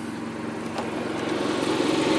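Toy hauler's onboard generator engine running steadily, growing gradually louder.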